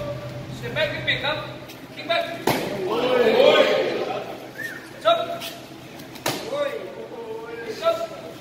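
Two sharp slaps of a bare-legged Muay Thai kick landing on a training partner's gloved guard, about four seconds apart. Men's voices run under them, and a louder burst of voices comes just after the first impact.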